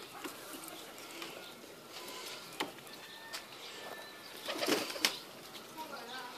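Domestic pigeons cooing around their coop, with scattered small clicks and scuffs. About four and a half seconds in comes a brief, louder rustling burst that ends in a sharp click.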